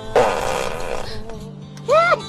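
A loud, raspy fart sound lasting most of a second, over background music; a short voiced cry follows at the very end.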